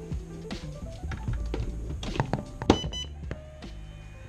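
Plastic clicks and knocks of an XT60 plug being pushed into an ISDT Q6 Plus LiPo charger, then, nearly three seconds in, a short electronic startup beep as the charger powers on, over soft background music.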